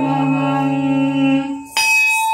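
Devotional song: a sung note held steady for about a second and a half, a brief break, then the next phrase starts sharply near the end.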